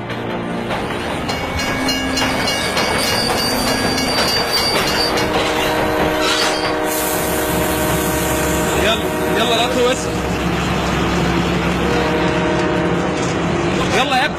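A train running with a steady rumble, its horn sounding in long held blasts from about a third of the way in. People shout over it a couple of times.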